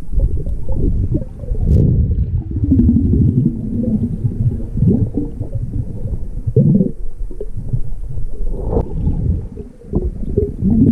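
Muffled, surging underwater rumble and gurgling of moving water heard through a submerged camera's housing, with one sharp click about two seconds in.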